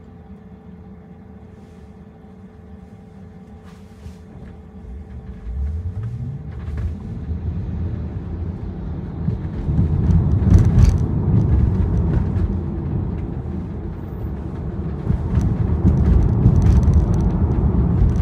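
Car heard from inside its cabin: quiet while waiting, then pulling away about five seconds in with a low rising hum as it gathers speed, followed by steady road and tyre rumble that grows louder.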